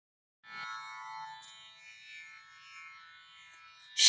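A quiet instrumental drone of many steady tones, starting about half a second in and slowly fading.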